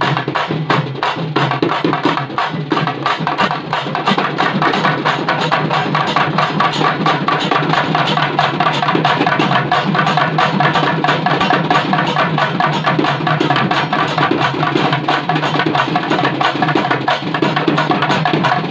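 Papare band playing: double-headed barrel drums beaten in a fast, steady rhythm, with trumpets playing a melody over the drums.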